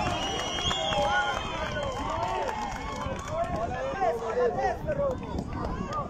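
Crowd of spectators talking and calling out, many voices overlapping.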